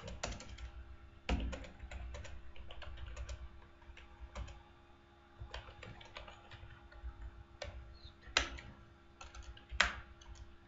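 Typing on a computer keyboard: irregular keystrokes, with a few louder clicks about a second in and near the end, over a faint steady low hum.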